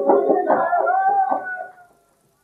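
A group of voices singing a devotional chant with hand clapping, ending on a long held note. The sound cuts off abruptly near the end.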